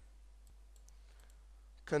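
A few faint, scattered computer mouse clicks.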